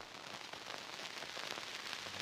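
Faint crackly rustling from a fabric plush toy being handled close to the microphone, with a small click at the start.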